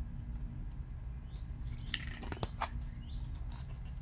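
A picture-book page being turned by hand: a short paper rustle with a few crisp clicks about two seconds in, over a steady low background hum.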